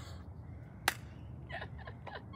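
A low rumble with a single sharp click about a second in, then a few faint, short, strained sounds from a woman laughing and whimpering under her breath.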